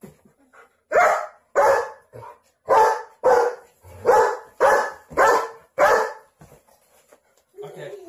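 German Shepherd barking at a pillow being swung near it: about eight loud barks in quick succession over roughly five seconds.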